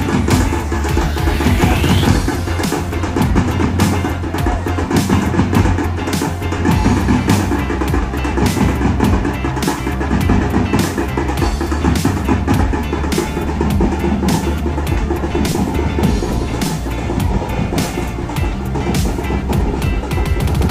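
Live tribal folk drumming: several mandar barrel drums beaten by hand, with another larger drum, playing a dense, steady dance rhythm.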